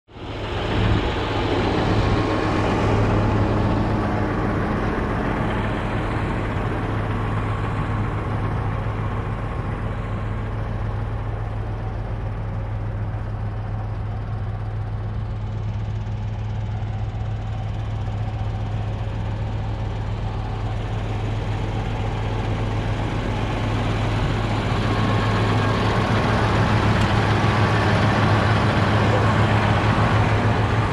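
John Deere 8330 tractor's six-cylinder diesel engine running steadily under load while pulling a seed drill, a continuous low drone. It grows a little louder over the last few seconds.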